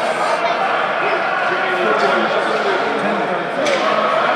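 Several overlapping voices of players and coaches calling out in an indoor ice rink, none of them clear words, with a few sharp knocks of hockey sticks and pucks on the ice, about two seconds in and again near the end.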